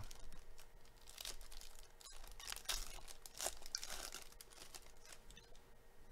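Foil wrapper of a Panini Donruss Racing trading-card pack being torn open and crinkled by hand, a run of faint, irregular crackles that thin out near the end.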